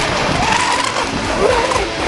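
Brushless electric Surge Crusher RC boat running fast across the water: a wavering motor whine rises in pitch and then falls back, over the hiss of spray.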